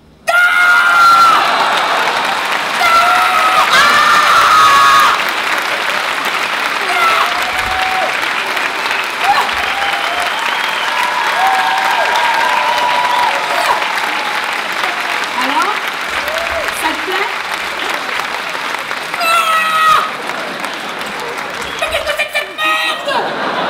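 Theatre audience applauding and cheering with scattered whoops, breaking out suddenly as the stage lights come up and easing slightly after about five seconds.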